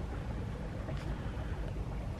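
Wind buffeting the microphone outdoors: a steady, unevenly fluttering low rumble, with one faint tick about a second in.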